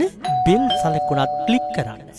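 A two-note bell chime, a higher note starting about a quarter second in and a lower note joining about half a second later, both ringing steadily until near the end: a notification-bell sound effect on a subscribe-button animation.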